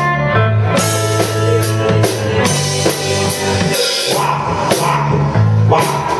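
Live band playing an instrumental passage of a rhythm-and-blues song on drum kit, electric bass and electric guitar, with no singing; the bass drops out briefly about four seconds in.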